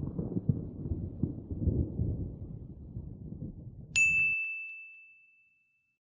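Outro logo sound effect: a low, crackling rumble, then about four seconds in a single bright metallic ding that cuts the rumble off abruptly and rings out, fading over a second and a half.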